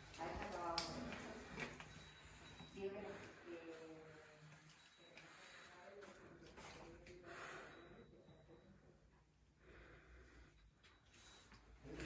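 Faint, indistinct voices talking in a quiet small room, with a sharp click about a second in; the talk fades toward the end.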